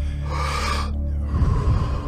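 A person taking one deep, audible breath in, then letting it out more softly, at the paced rhythm of Wim Hof method breathing. A steady low music drone plays underneath.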